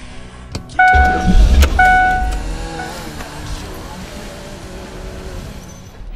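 A car goes by: a loud deep rumble starts about a second in, with two short horn beeps, and its noise then slowly fades away.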